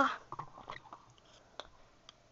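Faint handling noise from small plastic toy robot pieces picked up by hand close to the microphone: a scatter of light clicks and rustles.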